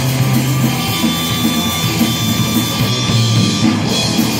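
A live crossover metal-punk band playing loud and fast: distorted electric guitar, electric bass and drum kit in an instrumental passage without vocals.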